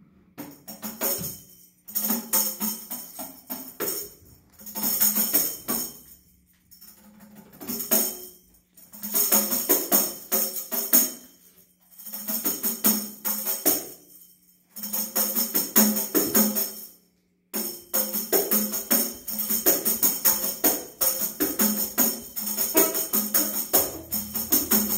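Tambourine shaken and struck in short jingling phrases of a second or two with brief silences between, turning into steady unbroken playing about three-quarters of the way through.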